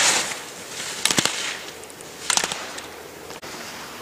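Slalom skis scraping across hard snow, with sharp clacks of gate poles being knocked aside about a second in and again near the middle, growing fainter as the skier moves away.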